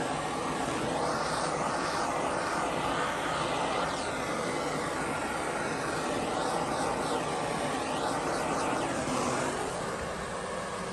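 Handheld propane blowtorch burning with a steady roaring hiss, its sound shifting as the flame is swept over the vinyl wallpaper corner to heat and soften it.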